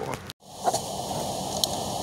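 Steady background hiss of room tone with no clear working sound. It follows a brief moment of total silence, and a single faint click comes just under a second in.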